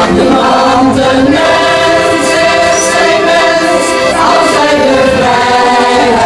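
Mixed-voice amateur choir singing in harmony with accordion accompaniment, holding long chords.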